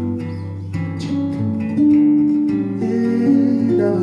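Two nylon-string acoustic guitars playing together in an instrumental passage: plucked and strummed chords under a melody line, the notes ringing on.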